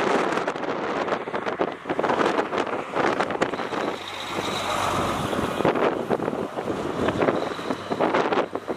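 Wind buffeting the camera microphone over road traffic noise. About four to six seconds in, a steadier vehicle drone rises above the gusts.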